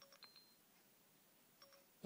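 Faint iPhone Siri chimes: a short high tone with a click just after the start as Siri opens and starts listening, then a second short chime near the end as it stops listening.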